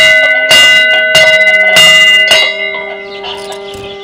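A metal temple bell struck five times, about one strike every half second, its ringing tone lingering and slowly fading after the last strike.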